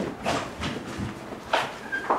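Footsteps on a hard floor, a few short steps about two to three a second, as two people walk to a door and out through it.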